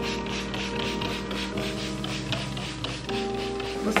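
Hand spray bottle misting water onto curly hair in a series of quick sprays that stop about three seconds in, over soft background music.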